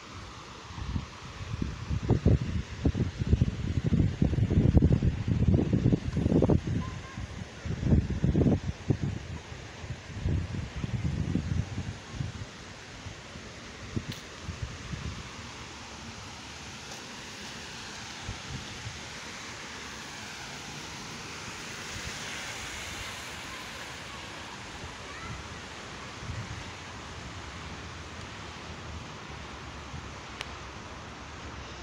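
Wind gusts buffeting the phone's microphone with loud, irregular low rumbles for the first dozen seconds, then a steady rushing noise of splashing fountain water.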